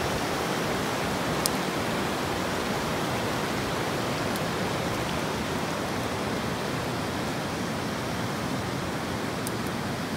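Steady rushing of a river, an even noise with no breaks, and a single faint click about one and a half seconds in.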